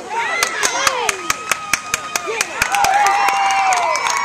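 Spectators clapping and cheering: quick sharp hand claps, about four a second, under shouting voices, with one long drawn-out shout near the end.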